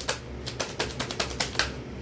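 Rapid, irregular clicking, several clicks a second, over a low steady hum.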